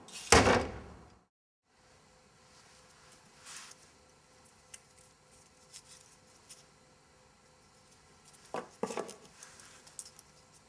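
A door swings shut with a loud bang about half a second in. After a moment of dead silence come scattered light clicks and knocks of small picture cubes being picked up and set down in a wooden tray, with a quick cluster of sharper knocks near the end.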